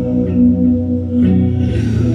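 Amplified electric guitar playing a repeating figure of held notes, with no voice over it.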